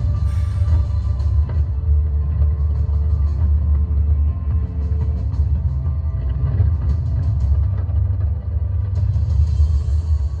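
Music with a continuous deep rumble underneath, from a fireworks-display livestream playing on a car's infotainment screen.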